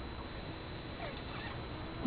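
Quiet, steady room hiss with a faint, brief high sound about a second in.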